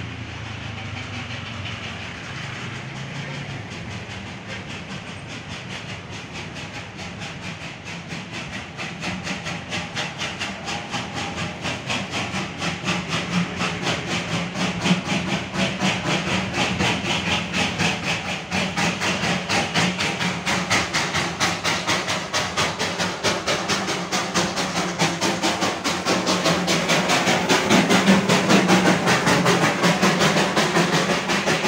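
Darjeeling Himalayan Railway steam locomotive approaching with a steady, rapid beat of exhaust chuffs and a steam hiss. It grows steadily louder from about a third of the way in.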